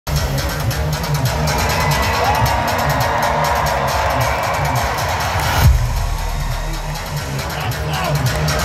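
Loud live band music through an arena PA, heavy pulsing bass, with a crowd cheering over it; about five and a half seconds in the crowd noise and upper sound drop away at once and a deep falling bass hit lands and rumbles on.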